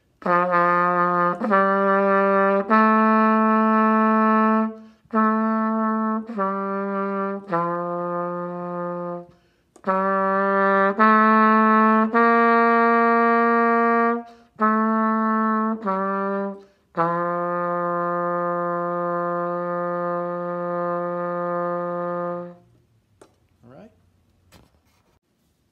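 Solo trumpet playing a slow exercise melody in its low register: phrases of three or four held notes separated by short breaths, ending on one long note held for about five seconds.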